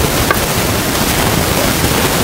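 Steady, loud hiss across the whole range, the recording's own noise floor, with one faint click about a third of a second in.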